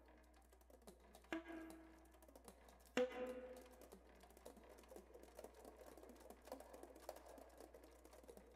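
Alto saxophone key clicks played as extended technique: two sharp key slaps, each with a short pitched ring, about a second and a half apart, then a quick, soft patter of key clicks from about four seconds in.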